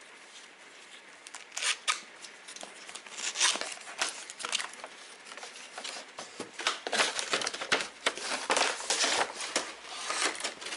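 A cardboard presentation box being opened and handled, and its clear plastic insert pulled out: irregular scraping, rustling and crinkling of card and plastic packaging, in uneven bursts that are busiest in the second half.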